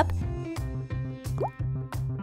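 Background music with a steady beat, and one short rising plop-like sound effect about one and a half seconds in.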